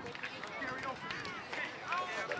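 Indistinct background chatter of several people's voices, none of it clear enough to make out words.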